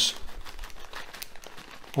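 Plastic packet of flaked almonds crinkling as it is tipped and the nuts are poured out into a hand, a run of small irregular crackles.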